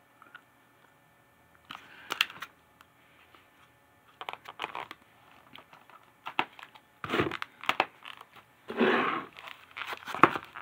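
Rigid plastic clamshell packs of Scentsy wax bars being handled and shuffled, crinkling and clicking in several short bursts.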